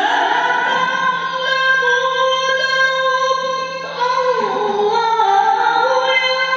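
A man reciting the Qur'an in melodic tilawah style, holding long, ornamented high notes. The pitch sweeps up into a sustained note at the start, then dips and climbs back about four seconds in.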